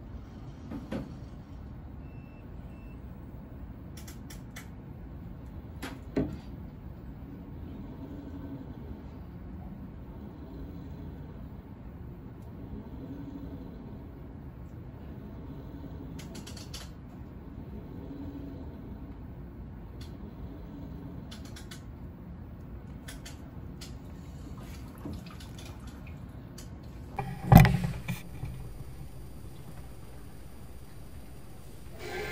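Steady low background rumble with a few short clicks, and one loud knock near the end.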